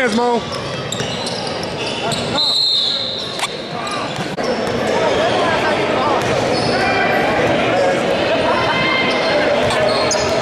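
Basketball bouncing on a hardwood gym floor amid overlapping voices of players and spectators, echoing in a large hall. A short shrill tone sounds about two and a half seconds in.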